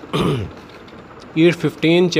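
A man briefly clears his throat once, a short rasp that falls in pitch.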